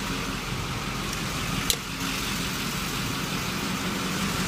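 Duramax V8 diesel idling steadily while it runs a DEF (reductant fluid) quality self-test, with one sharp click a little under two seconds in.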